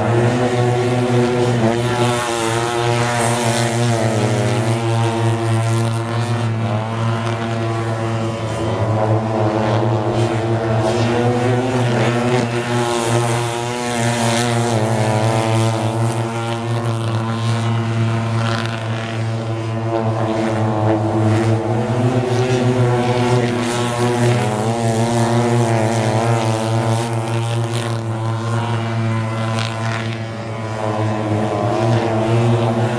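Mini speedway motorcycles racing, their engines running hard without a break, the pitch rising and falling as the riders go round the bends and down the straights.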